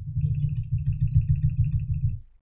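Rapid, continuous keystrokes on a computer keyboard, heard mostly as a quick run of dull low thuds with faint clicks on top.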